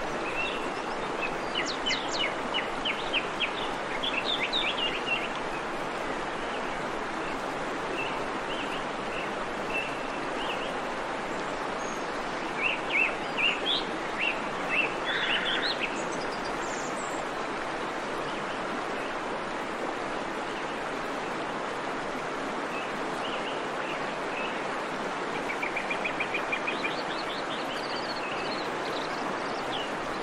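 Birds chirping in short quick series a few times, over a steady outdoor background hiss.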